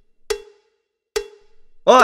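An edited cowbell-like 'waiting' sound effect: two short knocking dings about a second apart, each a single ringing tone that fades quickly, counting off a silence on the phone line. Near the end a voice shouts "おい!".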